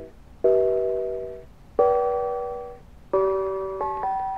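Mr. Christmas Bells of Christmas (1991) bells chiming a Christmas tune in harmony: four chords of several bell notes struck together, each ringing and fading before the next.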